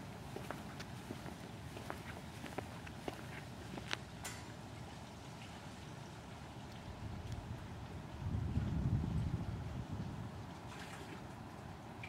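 Footsteps on concrete pavement, a few light steps a second over the first four seconds and then fading, with a low rumble lasting about two seconds from eight seconds in.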